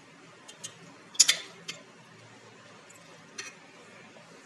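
Steel spoon clinking lightly against the inside of a glass jar of pickled onions as it scoops one out: a handful of short clinks, the loudest a little over a second in.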